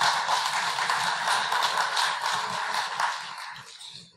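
Audience applauding, the clapping holding steady and then dying away near the end.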